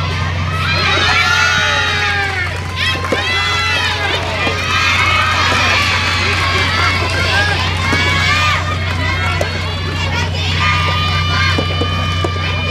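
Many high-pitched voices shouting and calling out, overlapping one another across the courts, over a steady low hum.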